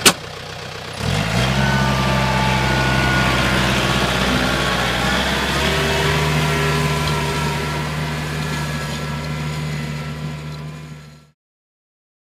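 John Deere compact tractor engine running steadily under load as it pulls a spring-tine harrow through beach sand, coming in loudly about a second in after a sharp click, shifting its note slightly partway through and cutting off just before the end.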